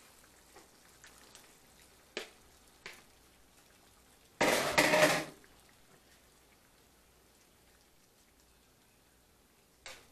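A few light utensil clicks, then about four and a half seconds in a loud clatter and splash lasting about a second as seasoned shrimp are tipped into a skillet of simmering curry sauce.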